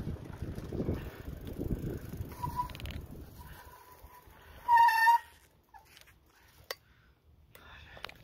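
Wind rumbling on the microphone while the bicycle is ridden, then bicycle brakes squealing in one steady high tone, faint at first and loudest for about half a second around five seconds in as the bike comes to a stop. Two sharp clicks follow.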